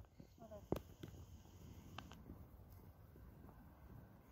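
Near silence, with one faint click about three-quarters of a second in and a fainter tick about two seconds in.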